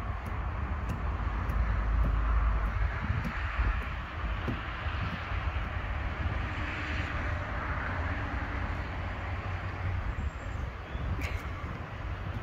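Steady outdoor background noise: a low rumble with an even hiss over it and a few faint ticks.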